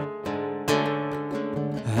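Acoustic guitar strummed, a few chords ringing out in a short instrumental gap between sung lines of a Kurdish song.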